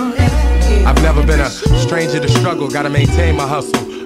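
Hip hop music: a vocal line over a deep bass line and drum beat.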